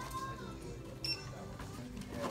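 A checkout register's short, high electronic beep about a second in, over background music.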